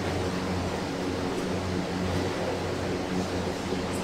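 Electric fans running with a steady low hum and an even hiss.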